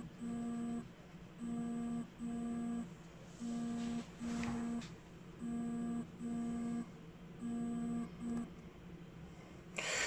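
Pulsing electrical buzz that comes in pairs of short bursts about every two seconds. It is interference from the mobile phone used to record, picked up by the audio.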